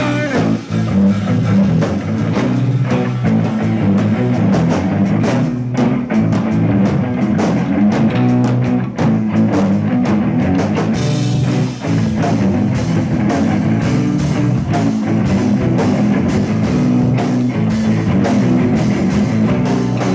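Live rock jam played by a band with guitar and drum kit, going on without a break.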